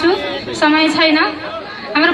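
Speech: a high-pitched voice talking, with a brief lull near the end.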